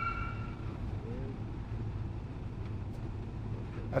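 A police siren's last steady tones stop about half a second in, leaving a low, steady rumble of vehicles.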